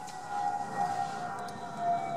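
A siren's long steady tone, wavering slightly and dipping lower in pitch in the second half.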